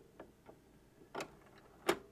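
Stylus riding the run-out groove of a spinning 45 rpm vinyl single after the music has ended: faint surface crackle broken by about five sharp clicks, the loudest near the end.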